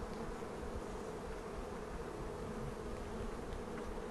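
A colony of European honeybees buzzing steadily around an opened hive, a dense, even hum with no single bee standing out.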